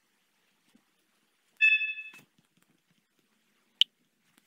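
A short WhatsApp message tone on a smartphone, a steady chime of about half a second, sounds about one and a half seconds in and ends with a click. A single sharp tick follows near the end.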